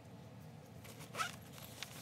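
A bag zipper pulled briefly about a second in, a short rising zip with faint scraping around it and a small click near the end.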